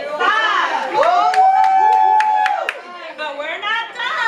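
Voices of a group: a long held shout lasting about a second and a half, with a few sharp claps under it, between bursts of talking.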